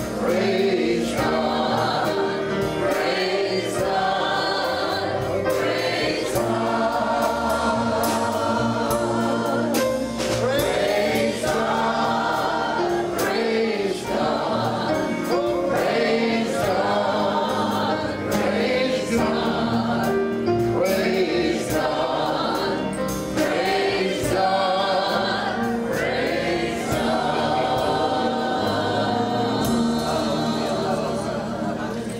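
Many voices singing a gospel song together, choir-style, at a steady level.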